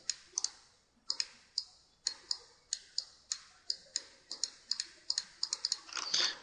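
Computer mouse clicking: about twenty short, sharp clicks at an irregular pace of roughly three a second, some in close pairs.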